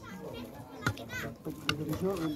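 Background voices of people talking, with children's voices among them, one voice rising in pitch a little past the middle. Two sharp clicks, about a second in and near the end.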